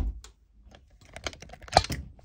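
The electronic music cuts off right at the start, leaving a run of small irregular clicks and knocks, the loudest just before two seconds in. These are handling noises from the phone that is recording being picked up.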